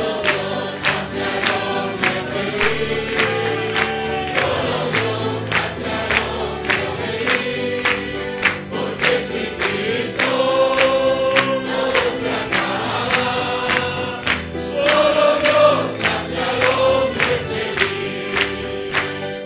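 A congregation sings a Spanish worship chorus together, with instrumental accompaniment and a steady rhythmic beat.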